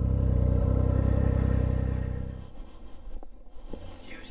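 Triumph Speed Triple 1050's three-cylinder engine with an Arrow exhaust, running steadily at low speed, then cutting out suddenly about two and a half seconds in. A couple of faint knocks follow.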